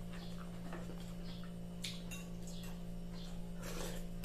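A person chewing soft boiled pork with wet mouth clicks and smacks, eating by hand, over a steady low hum. A louder rustling smack comes near the end.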